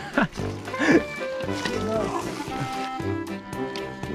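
Background music with steady held notes, and a short bit of voice in the first second.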